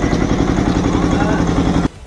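A small engine idling steadily, cut off abruptly near the end.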